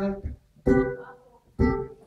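Acoustic guitar strumming single chords about a second apart, each struck and left to ring out and fade before the next, as live band accompaniment between sung lines.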